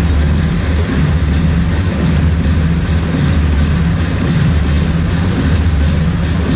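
Loud music with a steady beat and heavy bass, played over a stadium sound system.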